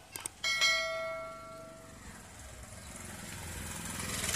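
A couple of faint clicks, then a single ringing, bell-like tone that starts suddenly and fades away over about a second and a half.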